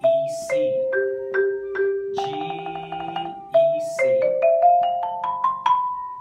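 Marimba played with yarn mallets: a short falling arpeggio of struck notes, a note sustained with rapid repeated strokes, then a rising scale of single strokes ending on a held higher note (B).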